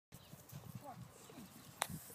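Quiet outdoor sound with faint, indistinct voices, and one sharp knock near the end.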